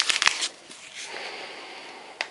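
A paper-foil sachet of dry fruit-drink mix being torn open by hand: a quick crackly tear in the first half-second, then a soft, quieter rustle.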